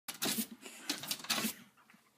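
A small dog's claws scratching and tapping against a glass door as it jumps up and paws at it, in two rough bursts that die away after about a second and a half.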